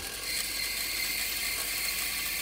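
Small metal-cutting bandsaw cutting through a sheet of 1084 carbon steel, the blade's teeth making a steady rasping hiss as the sheet is fed along a curved outline.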